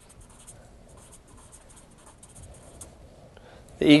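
Faint scratching of someone writing by hand, a run of short quick strokes, while the sentence is being written out.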